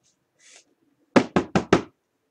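Four quick knocks, evenly spaced about five a second, on a hard tabletop.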